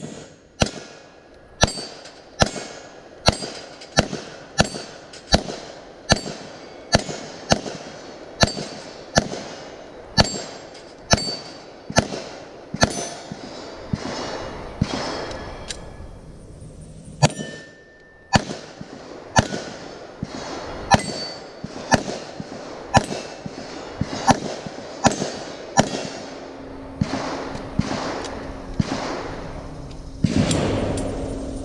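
Handgun shots fired in steady succession, about one every three-quarters of a second, each with the clang of the bullet striking a steel plate target. The shots pause briefly just past halfway, where a steady beep about a second long sounds, and then the firing resumes.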